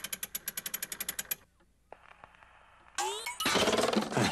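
Wind-up gramophone's side crank being turned: a fast, even run of ratchet clicks, about a dozen a second, lasting over a second. It is followed by a faint hiss but no music, because the gramophone is broken. Near the end comes a louder sound with rising pitch glides.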